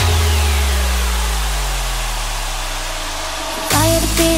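Electronic dance music transition: a held deep synth bass note with a slow falling sweep above it, fading gradually. The next track cuts in with a melody near the end.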